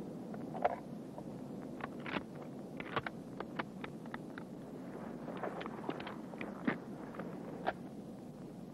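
Military rifle being unloaded by hand on the ground: a run of short metallic clicks and clacks as the magazine comes off and the action is worked, over steady wind noise.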